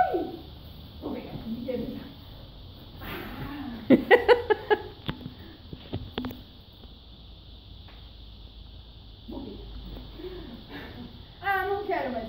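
Indistinct voices of people talking in the room. A cluster of short, sharp clicks or knocks comes about four to six seconds in.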